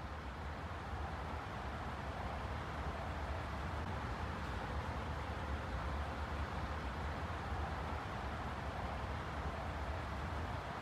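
Steady outdoor ambient noise: a constant low rumble under an even hiss, with no distinct events.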